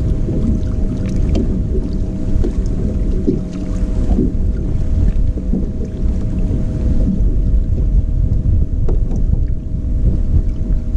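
Wind buffeting the microphone and water lapping against a bass boat's hull, with small knocks here and there and a faint steady hum underneath.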